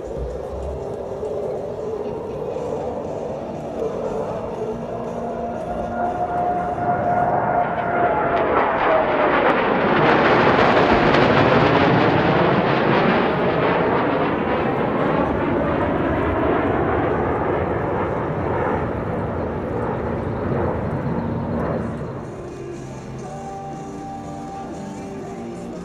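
F-15J fighter jets' twin-turbofan engines on a fast low pass and hard break: the jet noise grows to a peak about ten seconds in, with a whine that drops in pitch as they go by, then fades slowly. Music plays faintly underneath.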